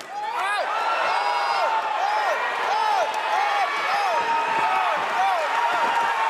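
Boxing shoes squeaking over and over on the ring canvas, a few short squeals a second, as two boxers move and trade punches. A few dull punch knocks and crowd noise lie under it.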